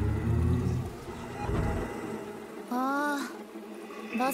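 A deep, distorted, growling ghost voice from a horror anime soundtrack that fades out about a second in, followed by weaker low rumbles and a short voiced sound that rises and falls in pitch near the end.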